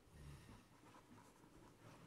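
Faint scratching of a pencil writing on notebook paper.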